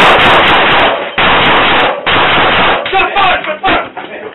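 A rapid series of close-range gunshots indoors, loud enough to overload the body camera's microphone, thinning out to a few sharp knocks near the end.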